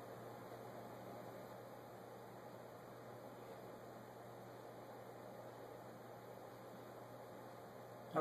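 Near-silent room tone: a steady faint hiss with a low hum underneath.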